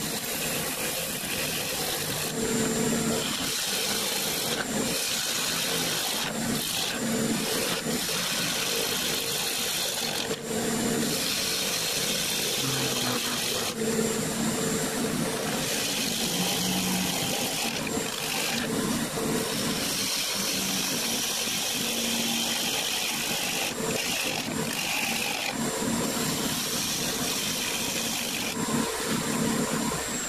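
Wood lathe running with a gouge cutting a spinning silver maple blank. A steady motor hum runs underneath, and the noise of the cut starts and stops every few seconds as the tool meets the wood.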